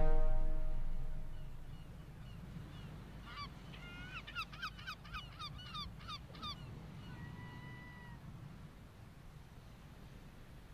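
Music fading out over the first second or so, then a gull calling: a quick run of short, falling calls, followed by one longer, level call. A low steady rumble runs underneath.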